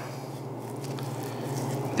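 Quiet steady low hum of room noise, with faint soft sounds of a boning knife slicing into raw deer meat.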